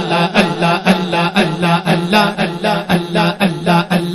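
Rhythmic devotional zikr chanting by a male voice, repeating a short phrase in a fast even pulse of about five beats a second.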